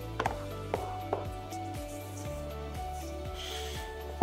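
Background music: soft, steady notes with light plucked attacks.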